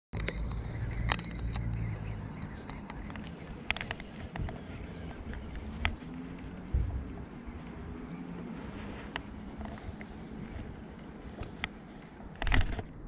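Low rumble of wind and rustling handling noise on a body-worn camera, with scattered light clicks and taps from a baitcasting rod and reel being worked.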